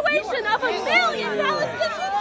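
A woman shouting over the chatter of a crowd.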